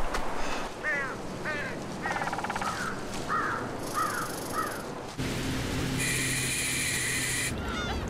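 Bird calls: a run of short, falling notes repeating about twice a second. A loud, steady buzzing tone lasts about a second and a half near the end, and then the calls start again.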